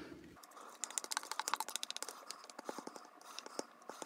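A spatula scraping cheesecake batter out of a plastic mixing bowl into a pan: a quick run of light clicks and scrapes, densest about a second in and thinning out toward the end.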